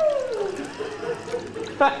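A long, drawn-out falling cry from a person tails off in the first half second, followed by a quieter stretch with faint water trickling and low voices; speech resumes just before the end.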